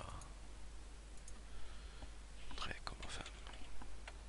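A few short clicks from a computer keyboard and mouse, clustered about two and a half to three and a half seconds in, as a dimension value is typed in, over faint steady hiss.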